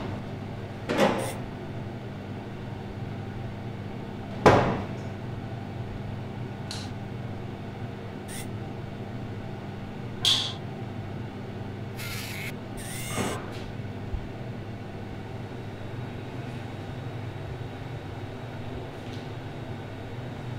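A steady low electrical hum, broken by a handful of short knocks and clatters; the loudest is a single thud about four and a half seconds in.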